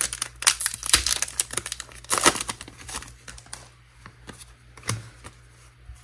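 A Pokémon card booster pack's foil wrapper being torn open and crinkled by hand: dense crackling for about three seconds, then a few scattered rustles as the cards are handled, fading toward the end.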